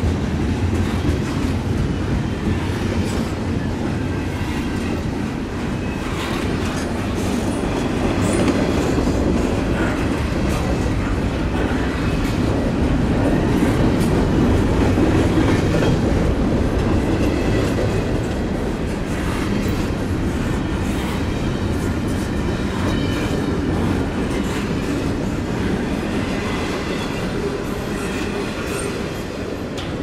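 Double-stack container well cars of a freight train rolling past: a steady rumble of steel wheels on rail, with scattered clicks as the wheels cross rail joints.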